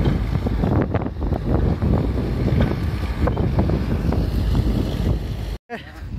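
Diesel engine of a Tata lattice-boom crawler crane running as a steady low rumble, with wind buffeting the microphone. It cuts off suddenly just before the end.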